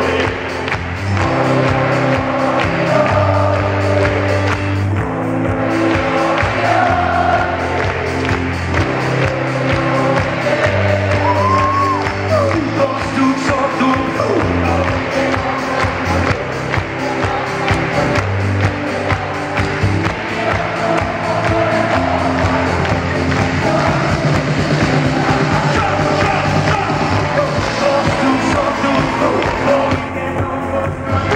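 Live band music with singing over acoustic guitars, double bass and drums, recorded from among the audience in a concert hall.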